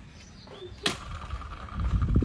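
A single sharp knock about a second in, over faint outdoor background with a faint steady tone after it.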